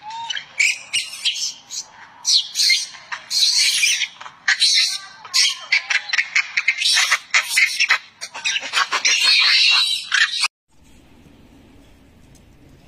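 Young macaque giving distress screams at being stuck: a rapid, shrill run of screams, call after call, that cuts off abruptly about ten and a half seconds in.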